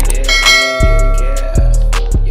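Hip-hop backing music with a heavy bass beat, joined about a quarter second in by a bright bell chime sound effect, the notification-bell ding of a subscribe animation, which rings for about a second.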